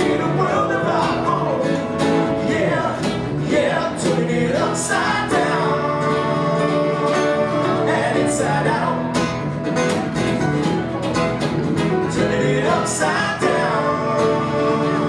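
Live band music from two acoustic guitars, an electric bass guitar and a keyboard, playing a country-rock song with a steady, full sound.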